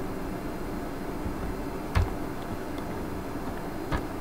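Two short sharp clicks at a computer, one about two seconds in and a fainter one near the end, over a steady background hum.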